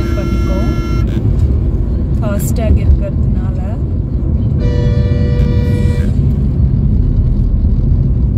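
Road and engine rumble inside a moving car on a highway, cut through by vehicle horns: one long horn that stops about a second in, and another horn blast of about a second and a half a little past the middle.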